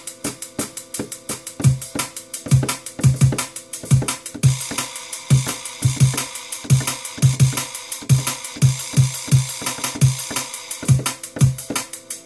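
A drum and bass beat, kick, snare and hi-hats, played from a DJ controller as hot cues are triggered on its pads, with quantize at a quarter beat keeping the hits on the beat. About four seconds in a brighter, hissier layer joins the drums.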